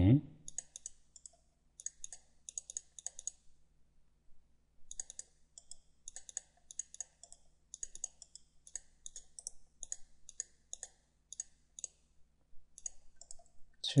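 Computer mouse clicking in quick runs of light, sharp clicks while drafting in CAD, with short pauses about three and a half seconds in and again near the end.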